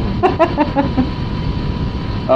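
A short burst of laughter in quick pulses during the first second, then only a steady background hum of room noise.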